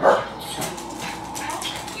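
A dog barks once, sharply, right at the start, followed by quieter scattered sounds.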